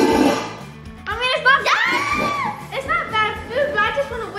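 Background music with girls' excited voices over it, gliding up and down in pitch from about a second in, with no clear words.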